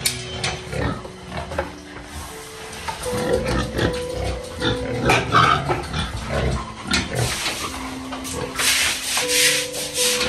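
Pigs grunting in a concrete pen. In the second half comes a hissy scraping, like a broom or scraper working the wet concrete floor.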